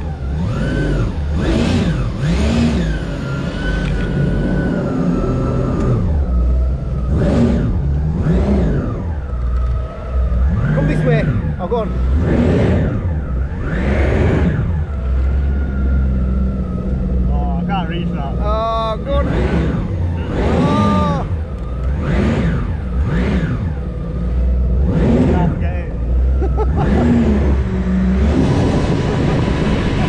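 Engine of a small car-shaped speedboat running fast across the sea, its pitch rising and falling every second or two, over a steady low rumble and rushing water and wind.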